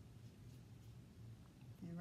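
Near silence: faint room tone with the soft brushing of a paintbrush, picking up green paint and spreading it on paper.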